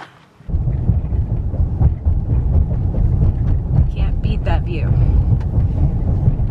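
Loud, steady low rumble of road and engine noise inside a moving pickup truck's cabin. It starts abruptly about half a second in. A faint voice is heard around the middle.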